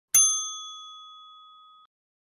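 Notification-bell sound effect: a single bright, bell-like ding that starts sharply and fades away over about a second and a half before cutting off.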